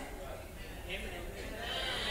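Faint voices with a wavering pitch, far quieter than the preaching around them.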